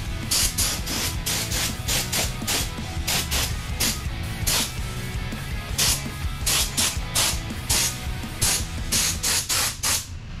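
Air-fed gravity-cup paint spray gun hissing in short, repeated bursts, about two a second, as the trigger is pulled and released, laying a test coat of blue paint on a truck frame.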